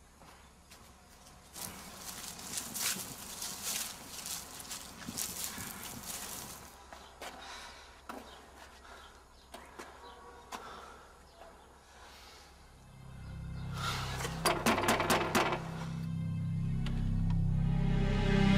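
Footsteps crunching and rustling over dry ground for several seconds. Then dark suspense music swells in with a low drone and gets louder towards the end, with a short burst of rapid rattling clicks just after it begins.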